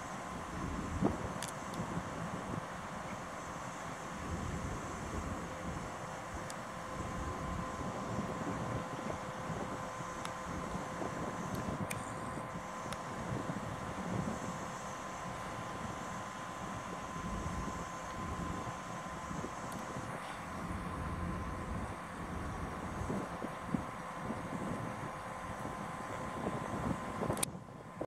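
ČD class 754 diesel locomotive running at low power while shunting slowly over station points: a steady low drone with a faint steady whine above it and a few faint clicks.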